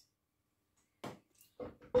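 Dead silence for about a second, then a few faint, short handling knocks, with a voice beginning right at the end.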